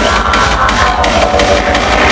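Loud live electronic dance music over a concert sound system, with a steady pulsing beat, heavy bass and sustained synth lines.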